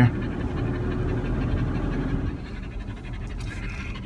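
A dog panting inside a moving car, over a steady low road rumble.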